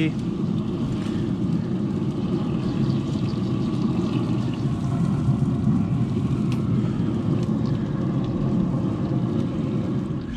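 A steady low rumble that keeps an even level throughout, with no distinct strikes or rhythm.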